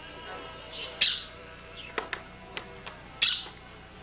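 A pet bird squawking loudly twice, about a second in and again just after three seconds, with a few sharp clicks in between, over faint background music.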